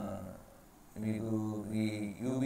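A man's voice in long, drawn-out syllables held at a steady pitch, almost chant-like: one trails off just after the start, and another runs from about a second in.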